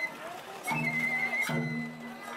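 Festival float music (hayashi): a bamboo flute holds a wavering high note in two phrases over steady low sustained tones, with a sharp strike opening each phrase.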